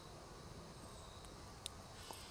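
Quiet background with a faint steady high tone, broken once near the end by a single small click: a blade of a Leatherman Squirt P4 pocket multi-tool snapping shut as it is folded.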